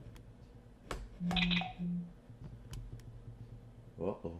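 Two smartphones tapped together with a light click, then two short buzzes from a phone as the Bump app registers the bump and brings up its connect prompt.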